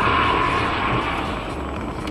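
Steady road and engine rumble of a moving car picked up by its dashcam, with a thin tone that fades out over the first second or so.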